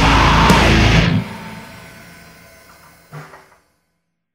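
Heavy rock song with distorted seven-string electric guitar and drums ends abruptly about a second in; the last chord rings and fades over the next two seconds, a brief low sound comes just after three seconds, then the sound stops.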